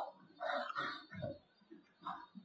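A man's voice, faint and indistinct: a short mumble about half a second in and a brief low vocal sound just after a second, then near silence.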